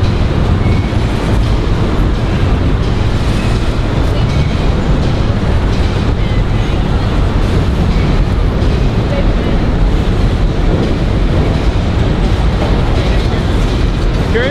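Freight train of hopper cars rolling across a steel elevated railway bridge overhead: a steady, loud rumble of wheels and cars that holds level throughout.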